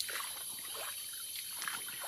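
Quiet rainforest ambience: a shallow stream trickling under a steady high-pitched insect drone.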